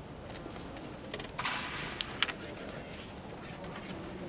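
A carrom striker shot: a short sliding hiss across the board, then two sharp clicks as the striker hits the carrom men. The second click is the louder.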